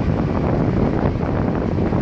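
Steady wind buffeting the microphone aboard a moving motorized outrigger boat (bangka), over the rush of water and the boat's running engine.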